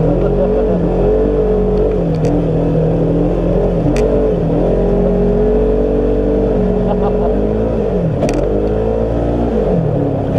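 Polaris RZR side-by-side engine running under way, heard from the cockpit: steady, then its pitch dips and climbs again about eight seconds in and falls near the end as the throttle changes. A couple of brief sharp clicks come about four and eight seconds in.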